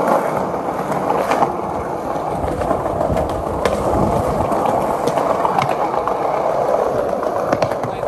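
Skateboard wheels rolling steadily over a smooth stone-tiled floor, with a few sharp clicks now and then.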